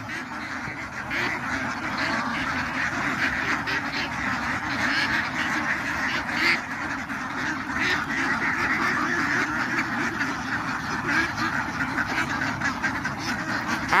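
A large flock of about a thousand domestic ducks quacking all together in a steady, continuous din.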